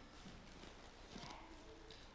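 Near silence: room tone, with a faint murmur of voices about halfway through.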